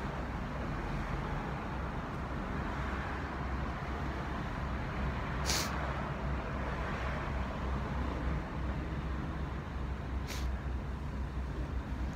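Street traffic noise: a steady low rumble of road vehicles, with two short, sharp noises about five and ten seconds in.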